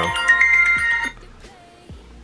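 iPhone ringtone playing for an incoming call, a run of steady chiming tones that cuts off suddenly about a second in.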